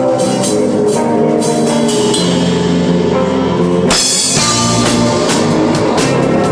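Indie rock band playing loudly: strummed electric guitar over a drum kit, with one sharp hit about four seconds in.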